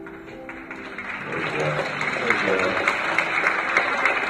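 Audience applauding and cheering in an auditorium, swelling from about a second in and growing louder, over guitar music that fades beneath it.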